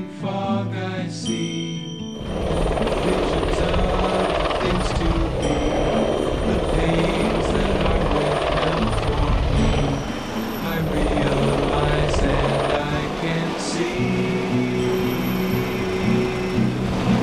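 Acoustic guitar music, joined about two seconds in by loud helicopter noise that carries on under the music.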